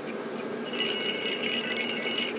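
A small bell on a Santa Christmas ornament being shaken, jingling with a bright high ringing that starts under a second in.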